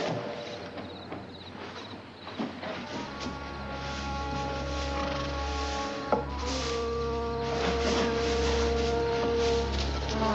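Scuffing and rustling movement for the first few seconds, then a tense dramatic film score enters about three seconds in: a low steady drone under sustained held chords, with one long held note from about six and a half seconds. A single sharp knock comes about six seconds in.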